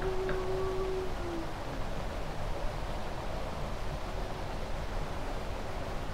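Steady hiss and low rumble of a gain-boosted 1951 field recording, with a single held tone that ends about a second and a half in.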